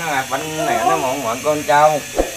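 A man's voice reciting a prayer in an unbroken sing-song chant, the pitch gliding up and down, over a steady low hum.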